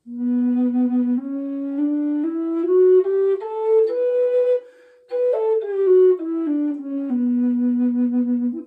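Native American style Aeolian minor drone flute in B minor playing its seven-note minor scale: it climbs note by note up an octave, breaks off briefly for a breath near the middle, then steps back down and holds the low B.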